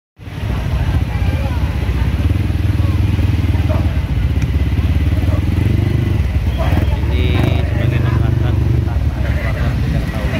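Small motorcycle engines running steadily at low speed in a dense, slow-moving crowd of bikes, with people's voices mixed in.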